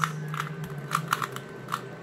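A Rubik's Cube's plastic layers being twisted by hand, giving quick, irregularly spaced clicks, about five in two seconds.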